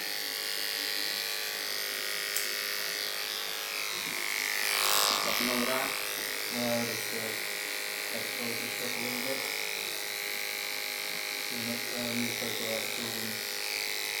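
Corded electric hair clippers running steadily while cutting short hair along the side of a head, swelling louder for about a second roughly five seconds in. Indistinct talking comes and goes underneath.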